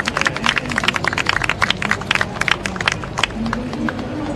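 A small group applauding with irregular hand claps, thinning out near the end.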